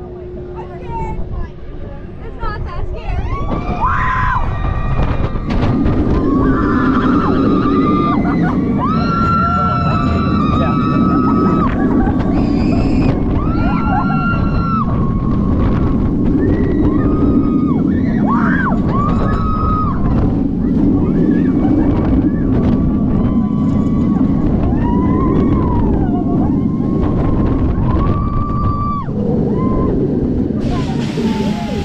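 Riders screaming and yelling on a B&M dive coaster as the train drops and runs its course, over a heavy rush of wind and train rumble on the on-ride camera's microphone. It is quieter for the first few seconds, then the wind and screams come in about three seconds in and keep on in short, repeated cries.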